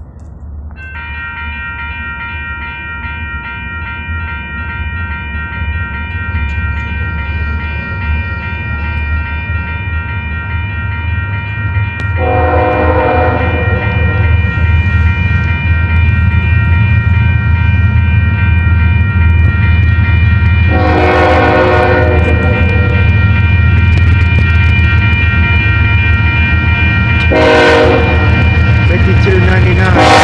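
A grade-crossing bell starts ringing about a second in and keeps ringing. Union Pacific GE AC45CCtE diesel locomotives approach with a low rumble that grows steadily louder. The horn sounds twice long and once short, the crossing warning pattern.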